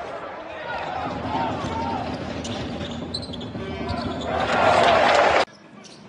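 Game sound from a basketball arena: a ball bouncing on the court among crowd noise and voices. Near the end the crowd noise swells loudly, then cuts off suddenly.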